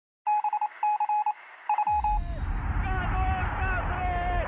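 Intro sound effect: three quick bursts of rapid electronic beeps, thin like a telephone line. About two seconds in, a deep falling sweep leads into a steady low rumble with voices over it.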